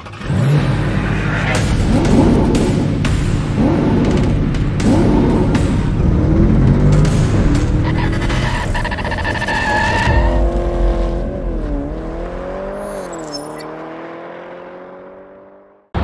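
Intro music mixed with car sound effects of engine revving and tyre squeal, ending in an engine note that dips twice, then climbs slowly as it fades out.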